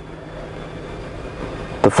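Steady low background rumble and hum, with no distinct events, in a pause between spoken words.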